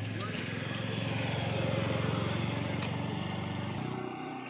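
A motorcycle engine passes close by, getting louder to a peak about halfway through and then fading as the bike rides away.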